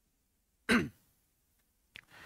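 A man clears his throat once, a short voiced sound falling in pitch, about three-quarters of a second in, in an otherwise quiet pause.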